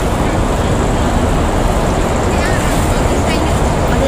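Steady, loud outdoor city rumble of traffic noise, with faint voices in it near the middle.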